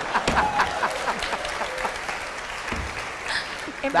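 Studio audience applauding and laughing, the clapping slowly dying away.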